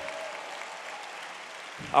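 Church congregation applauding steadily.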